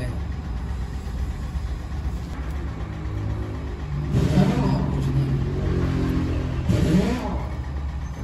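An engine running in the background: a steady low rumble, with a pitched hum that grows stronger from about three seconds in and fades near the end. Brief voices come in over it.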